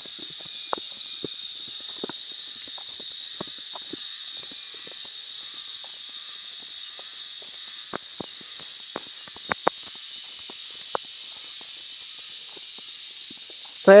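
Insects buzzing steadily in a high pitch, with irregular light crunches and clicks of footsteps on a dirt track covered in dry leaves.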